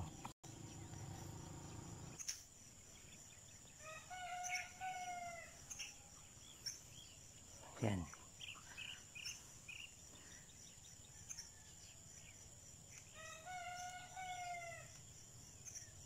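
A rooster crowing twice, each crow about a second and a half long and roughly nine seconds apart, over a steady high-pitched whine.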